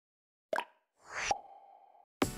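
Animated-logo sound effects: a short pop about half a second in, then a whoosh rising in pitch that ends in a sharp hit just past a second, leaving one steady tone ringing out and fading.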